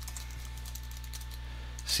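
Typing on a computer keyboard: a run of keystroke clicks, quieter than the voice around it, over a steady low electrical hum.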